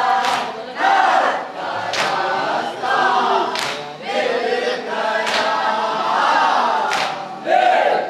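A group of men chanting a nauha lament together, with sharp slaps of hands on chests (matam) landing in unison about every 1.7 seconds, five times.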